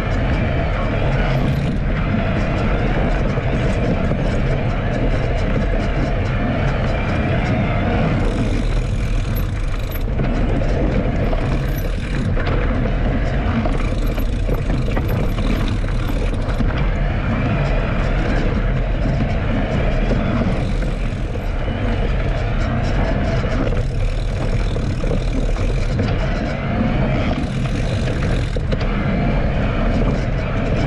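Steady rumble of wind buffeting an action camera's microphone while knobby mountain-bike tyres roll over a rocky dirt trail.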